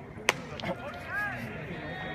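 A single sharp crack as the pitched baseball arrives at home plate, followed by a short rising-and-falling shout from the field or stands, over a steady background of voices.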